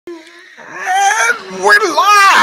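A person's voice making loud, wordless exclamations whose pitch swoops up and down, getting louder about half a second in.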